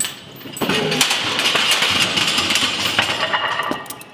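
Several steel barbells toppling over and crashing onto the gym floor, a long run of metal clanging and rattling that dies away near the end.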